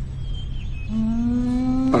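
A low, steady background drone from the music bed. About a second in, a man's voice holds a long, level hesitation sound that runs straight into his next word.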